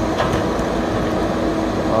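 Heavy diesel logging machinery running steadily, a low drone with a steady hum and a couple of faint clicks near the start.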